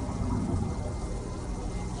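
A turtle tub's water filter running: a steady rush of moving water with a low hum underneath.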